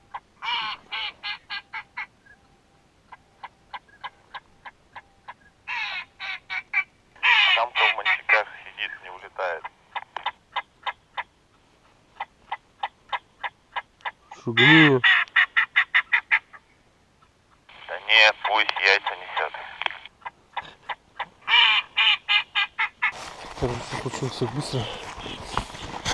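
Ducks quacking in several bursts of fast, repeated short calls, with sparser single quacks between the bursts. A denser, noisier sound takes over near the end.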